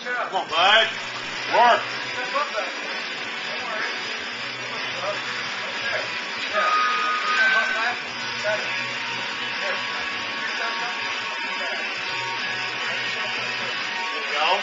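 Men's voices shouting for the first couple of seconds, then a steady noisy background with music underneath.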